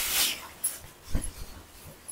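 Silk saree rustling as it is shaken out and spread open, loudest at the start and fading within half a second, with a soft thump about a second in.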